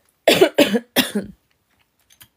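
A woman coughing three times in quick succession, each cough short and loud.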